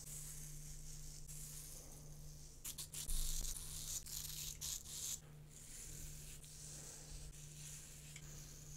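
Multi-blade cartridge razor scraping in short strokes over a lathered scalp, with a quick cluster of sharp clicks and a thump a little under halfway through. A steady low hum runs underneath.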